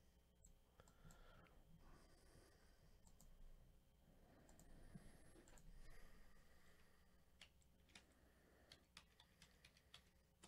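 Faint clicking of a computer keyboard being typed on, a few scattered keystrokes mostly in the last few seconds, over near silence.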